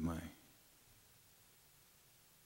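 A man's voice finishes a single word at the very start, then near silence: quiet studio room tone.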